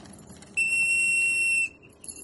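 A single loud, high-pitched electronic beep: one steady tone about a second long, like an alarm or smoke-detector tone, starting about half a second in and cutting off cleanly.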